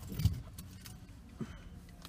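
Small movement sounds: a soft thump about a quarter second in, light metallic clinks, and a sharp click later on, as a hand moves through hair while wearing rings and a watch.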